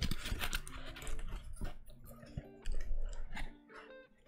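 Cardboard figure box being handled and opened by hand: irregular light clicks, taps and scrapes of the cardboard flaps, with faint music playing underneath.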